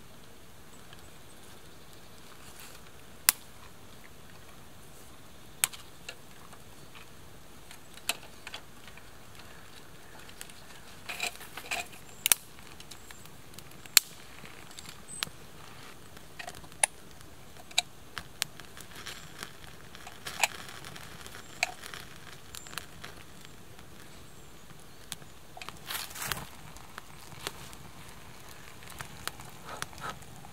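Small twig campfire catching from match-lit pine-resin tinder: scattered sharp crackles and pops, a few every couple of seconds, over a faint steady hiss.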